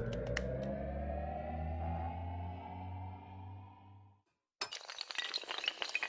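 Animated-logo sound design: a rising synthesized tone over a low drone that fades out about four seconds in. After a brief silence comes a dense clinking clatter of many small hard pieces, the sound effect for rows of domino tiles toppling.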